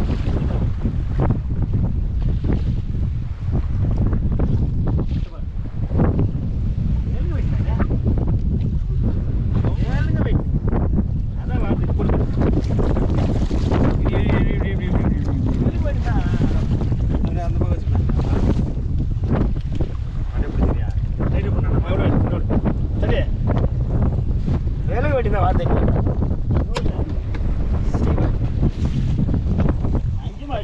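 Wind rumbling on the microphone over the wash of choppy sea around a small open fishing boat, steady throughout. Brief snatches of voices come and go.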